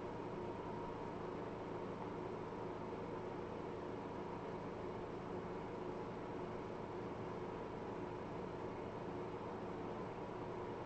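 Faint steady hiss with a low electrical hum: room tone, with no other sound.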